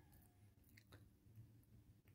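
Near silence: faint room tone with a couple of very faint ticks.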